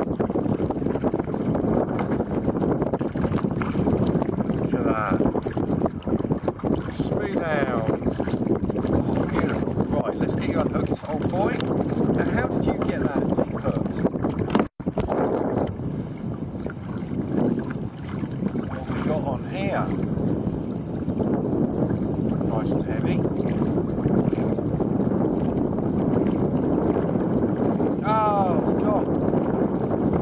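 Wind buffeting the microphone over choppy water lapping against a kayak, a steady rushing noise with a momentary dropout about halfway through.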